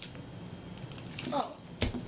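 Crinkly plastic wrapping rustling as a layer is peeled off a LOL Surprise toy ball, with a sharp crackle near the end.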